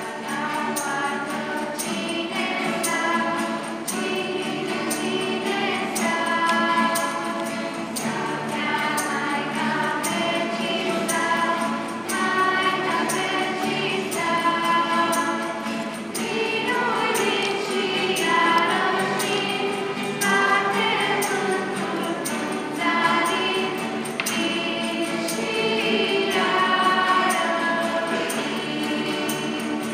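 A young mixed choir singing a Romanian Christmas carol (colind) in several voices, accompanied by strummed acoustic guitars that keep a steady beat.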